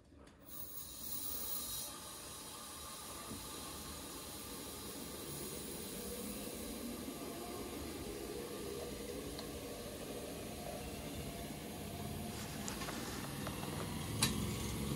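Steam hissing through a small Tesla turbine as it is fed steam for a spin test with its condenser under near-full vacuum. The low, steady hiss builds over the first second or two, then holds, growing slightly louder as the turbine spins up.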